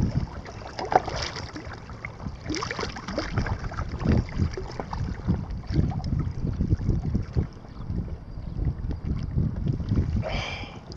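Wind buffeting the microphone in irregular gusts over choppy water lapping around a small fishing craft.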